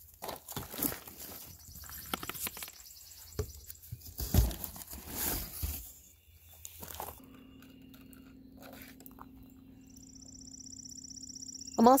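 Cardboard rustling and knocking as potted spruce seedlings are pulled from their cardboard shipping box, with one sharper knock about four seconds in. After about seven seconds the sound changes to a faint steady hum, with a high thin tone coming in near the end.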